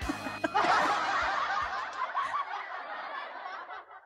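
Laughter that trails off and fades out near the end.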